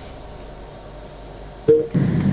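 Steady low hum and hiss of an online-call audio line, with a short pitched tone near the end.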